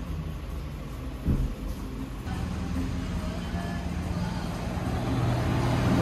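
Bus engine running on the street alongside, a low steady hum that grows louder toward the end as the bus draws near. A brief knock about a second in.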